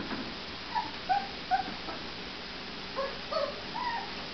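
Puppy whimpering: six short, high squeaky whines, three in the first half and three more near the end.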